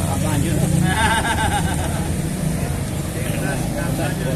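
Road traffic passing close by: a car drives past followed by motorcycles, a steady low engine and tyre rumble that is strongest in the first second.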